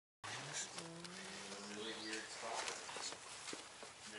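A faint voice for about the first two seconds, then light clicks and rustling from hands working a backpack's straps, buckles and cord.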